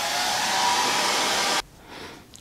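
Small handheld hair dryer blowing on its lowest setting: a steady rush of air with a faint motor whine, which stops abruptly about one and a half seconds in.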